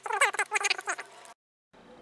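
Sped-up, high-pitched chipmunk-like speech of a man reading text aloud, fast-forwarded. It cuts off abruptly about a second and a half in, followed by a short dead silence.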